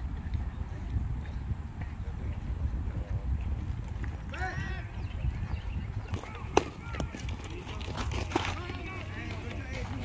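Youth baseball game ambience: scattered voices of players and spectators over a steady low rumble. One sharp smack comes about six and a half seconds in, and a lighter click near eight and a half seconds.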